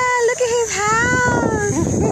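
A high-pitched vocal wail in two long notes of about a second each, the second sagging in pitch before it breaks off, over people talking.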